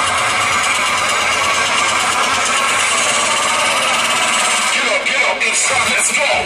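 Loud show audio over outdoor speakers: a dense mix of many voices and music, with a short dip about five seconds in before the music comes in strongly.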